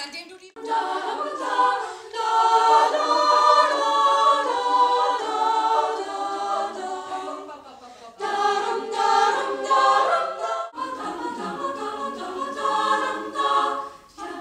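Women's choir singing in several voice parts. The singing has two short breaks, about seven and a half seconds in and again near eleven seconds.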